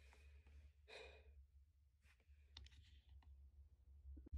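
Near silence, broken by one short breathy sigh about a second in, followed by a few faint clicks.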